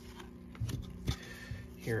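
Glossy trading cards sliding against each other as a stack is flipped through in gloved hands, with a few soft flicks about a second apart.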